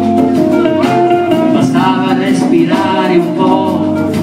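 A blues band playing live, with electric guitar over a full rhythm section and a male voice singing.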